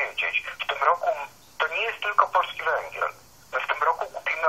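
Only speech: a person talking in phrases with short pauses, heard over a telephone line, so the voice sounds thin and narrow.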